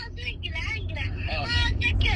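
A voice coming through a smartphone on speakerphone during a call, over the steady low rumble of a car's cabin.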